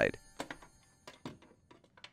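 A few faint, short clicks and knocks as a dishwasher's lower access panel is pulled free and handled.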